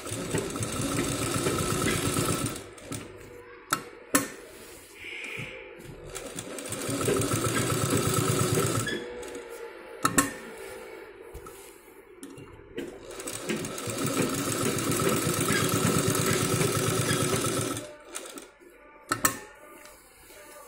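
Straight-stitch sewing machine stitching in three fast runs of a few seconds each, with pauses between. A few sharp clicks fall in the pauses.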